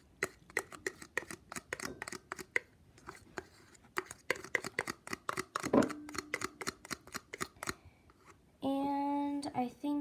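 Old clear slime being squeezed out of its plastic container into a bowl: rapid, irregular sticky clicks and pops that die away about eight seconds in.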